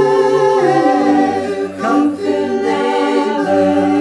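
A four-part a cappella vocal group, sopranos, altos, tenors and basses, singing layered lines in Dutch at once in held chords, the bass part moving to new notes a few times.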